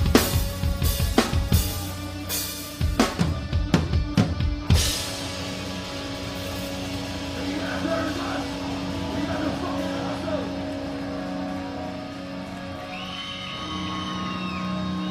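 Live metal drumming heard close to the kit, a Mayfish custom kit with a DW copper snare: heavy, rapid drum and cymbal hits for about the first five seconds. Then the drumming stops and a sustained band drone rings on at a lower level.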